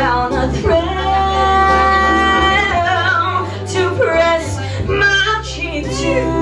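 A woman singing a slow ballad into a microphone over instrumental accompaniment. She holds long, steady notes with a slight vibrato.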